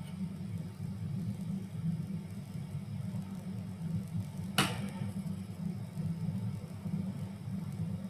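Steady low background hum picked up by a video-call microphone, with a single sharp click about four and a half seconds in.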